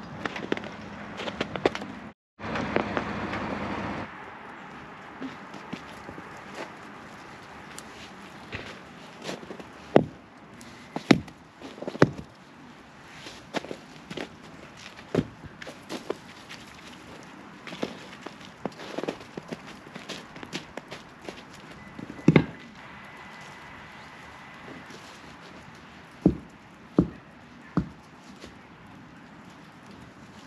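Footsteps crunching on packed, icy snow, with scattered sharp crunches and knocks. The loudest come in a run of three and, later, one or two more. Over the first few seconds there is a steady rushing noise.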